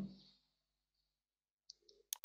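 Near silence, with two faint computer-mouse clicks near the end.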